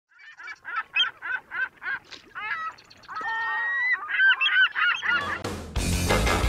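Honking bird calls: a quick run of about six short calls, then longer, more varied calls. Loud music cuts in about five seconds in.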